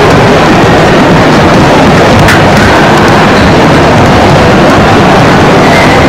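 Loud, steady, distorted roar of hall noise, overloading the recording, with one sharp click a little past two seconds in.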